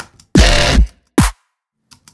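A short looping dubstep pattern of resampled synth bass played back in Ableton Live: a few short clicks, a loud half-second bass stab that starts with a falling pitch, then a shorter hit that also falls in pitch, followed by silence. The loop starts again near the end.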